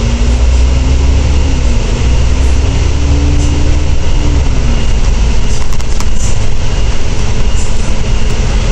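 Volvo D10A285 diesel engine of a Volvo B10TL double-decker bus, heard from inside the cabin, pulling under load with a rising whine that dips briefly, climbs again, then falls away about four and a half seconds in as the engine eases off.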